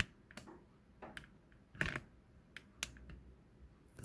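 A handful of faint, irregular light clicks and taps, the loudest a little before two seconds in, like small objects being handled.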